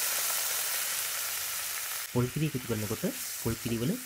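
Coconut milk sizzling as it hits hot fried onions, ash plantain and green chillies in a non-stick wok: a steady hiss that eases off about halfway through.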